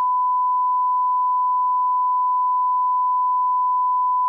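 Censor bleep: one steady, unbroken high-pitched beep tone held through the whole stretch, masking swearing in the soundtrack.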